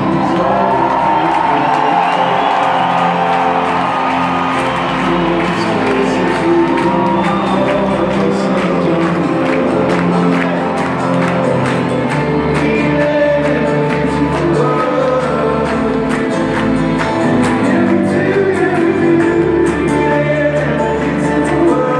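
A live rock band playing a song in a stadium, amplified through the PA and heard from the stands. A lead vocal, which the guitarist has been introduced to sing, runs over sustained chords, with crowd noise mixed in.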